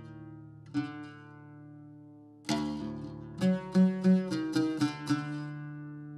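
Oud played solo, unaccompanied: a single plucked note rings out about a second in, then a strong stroke halfway through is followed by a quick run of plucked notes, and the last note is left ringing.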